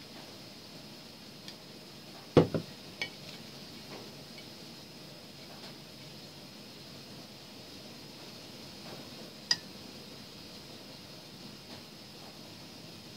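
Ceramic sauce cup and spoon on tableware: a cluster of knocks about two and a half seconds in, the loudest, as the cup is set down on the table, then a single sharp ringing clink of the spoon against the ceramic near ten seconds in, with a few small taps between.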